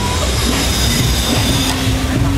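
Zip-line trolley pulleys running along a steel cable under a rider's weight, a steady high whine over a low rumble. The whine stops shortly before the end.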